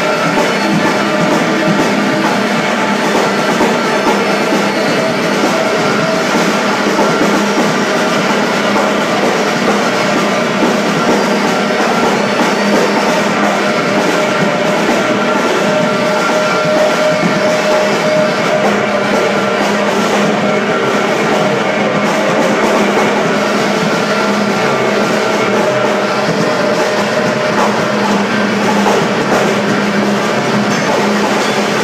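A live band playing loud, dense rock music on electric guitar and drums, recorded through a camera microphone. The sound is a steady, unbroken wall of sustained droning tones with drums beneath, and no pauses.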